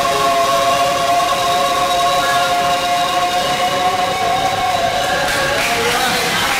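A man and a woman singing together, holding one long sustained note that ends near the end.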